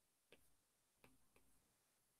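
Near silence with three faint, short ticks, the first about a third of a second in and two more close together about a second in.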